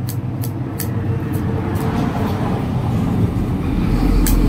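A steady low rumble, like a motor running, that swells near the end. Over it come sharp, high clicks, about two a second, in the first two seconds.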